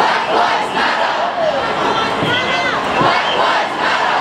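A large crowd of marching protesters, many voices calling out at once in a loud, steady din, with single voices rising above it a little after the middle and again near the end.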